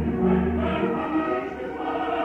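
Live opera performance: orchestra playing with singing voices, over a deep held bass note in the first second.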